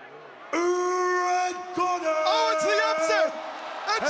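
A ring announcer over the arena PA calls out the winner's name in a long, drawn-out shout starting about half a second in. The crowd joins with cheers and whoops from about two seconds in.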